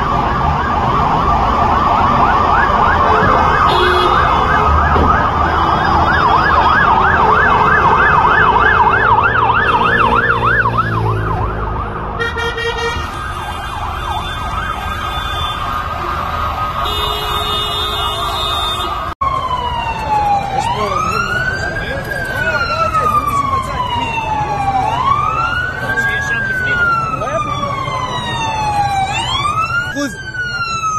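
Emergency vehicle sirens: a fast warbling yelp for about the first twelve seconds, then, after a cut, a slow wail that falls and rises about every four seconds, with a second, faster-cycling siren joining near the end.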